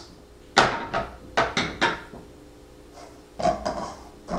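Kitchen clatter while pie-crust dough is mixed by hand in a stainless steel bowl on a gas stove grate: a quick run of sharp knocks and clinks in the first two seconds, then a few more near the end.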